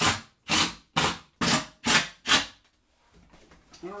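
Cordless drill/driver run in six short trigger bursts, about two a second, each starting sharply and winding down, as a screw is driven through a metal hook rail into a wooden wall stud.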